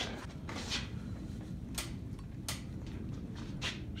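Room tone: a steady low hum with four or five brief, faint clicks spread through it.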